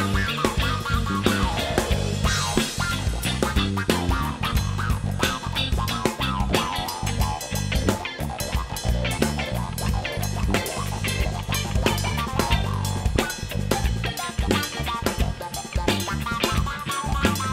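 A jazz-fusion band playing live: guitar over bass guitar and a drum kit, with busy drumming and a moving bass line.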